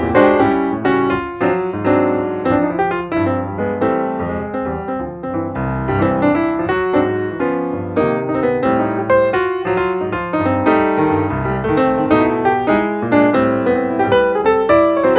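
Piano music, many quick notes in succession over sustained lower notes.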